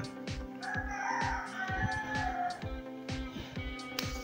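Background music with a steady beat, and a rooster crowing once over it, a drawn-out call of about two seconds starting about a second in.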